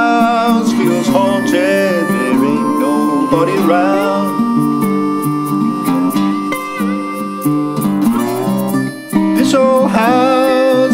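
Instrumental break in an acoustic folk-blues song: acoustic slide guitar plays a melody of wavering, gliding notes over a picked accompaniment.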